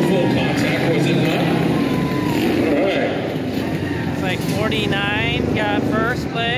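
Race motorcycles running at low speed, a steady low engine drone under the crowd's noise. A voice calls out from about four seconds in.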